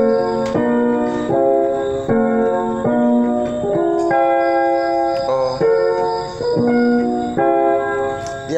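Electronic keyboard on a piano voice playing a string of sustained block chords in the key of F, a new chord about every three-quarters of a second. The chords are played in changed positions, as inversions.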